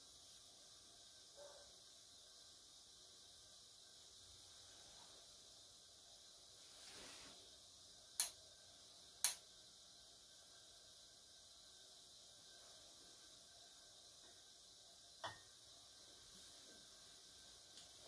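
Quiet room tone broken by a few sharp clicks of tea utensils being handled and set down: two loud clicks about a second apart near the middle, and a fainter one later.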